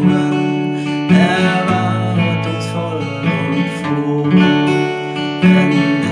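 Steel-string acoustic guitar, capoed at the second fret, strummed in a steady rhythm of chords, with a man's voice singing the verse melody over it.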